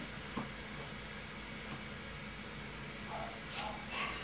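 Curved grooming shears snipping the hair around a dog's front foot: a few light, sharp clicks over a steady room hum.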